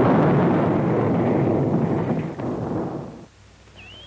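Cartoon sound effect of a planet exploding: a sudden rumbling blast that dies away over about three seconds.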